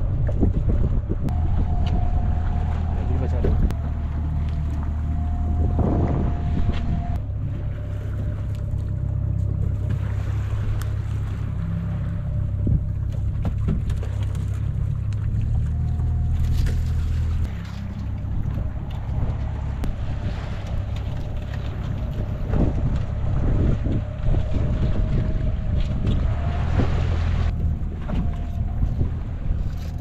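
A fishing boat's engine running steadily, its pitch stepping up and down slightly now and then, with wind buffeting the microphone.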